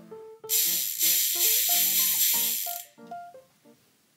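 Bicycle rear-wheel freehub packed with thick grease, buzzing with pawl clicks as the wheel is spun. The loud, dense, high buzz starts about half a second in and dies away near three seconds.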